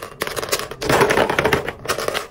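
Hollow clear plastic capsules clicking and clattering against each other and a metal wire basket as they are dropped in, in two quick runs of rattling with short pauses between.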